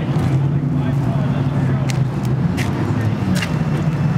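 A car engine running, with indistinct voices of people in the background.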